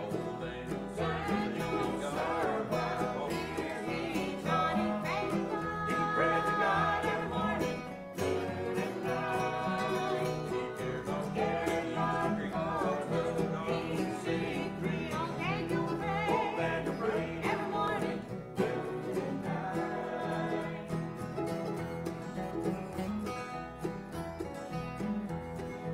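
A small bluegrass gospel band playing live: acoustic guitars, mandolin and electric bass, with several voices singing together.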